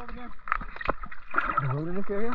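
Muffled voices of people talking, heard from under the water, with water gurgling and clicking around the camera.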